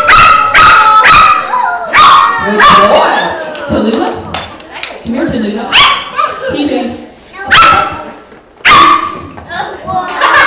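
A small poodle barking: about eight sharp, high yaps at uneven intervals.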